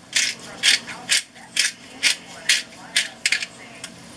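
Pepper mill being twisted to grind pepper, a rasping ratchet-like turn repeated about twice a second, eight or so times.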